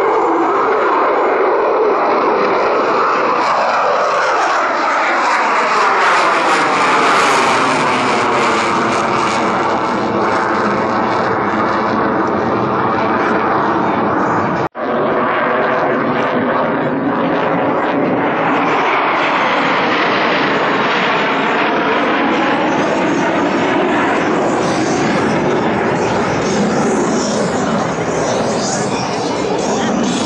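USAF Thunderbirds F-16 Fighting Falcon fighter jets running loud and continuous overhead, with a sweeping, phasing rise and fall as the jets pass. The sound cuts out for an instant about halfway through, then the jet noise carries on.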